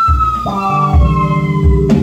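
Free-improvised music from voice, alto saxophone, electric bass and drums: a high held note slides slowly downward over sustained electric bass notes and low drum thumps.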